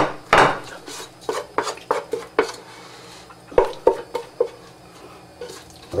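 A metal utensil knocking and scraping against a pot and a glass baking dish while sticky marshmallow-coated rice cereal is scooped out and spread. It makes a string of irregular clinks and knocks, loudest in the first half-second, with a few more up to about four and a half seconds in.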